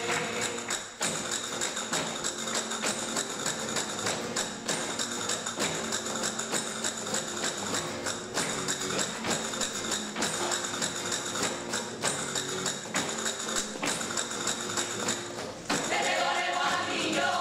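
A brass-and-percussion band (an Andalusian agrupación musical of cornets, trumpets and tuba with drums) playing a piece, held brass notes over a steady percussion beat.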